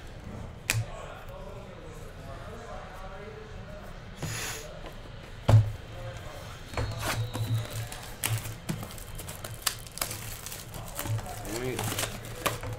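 Hands handling trading cards and a cardboard hobby box: card slides and a swish, a sharp knock about five and a half seconds in, then a run of clicks and crinkles from the box and its plastic shrink-wrap in the second half.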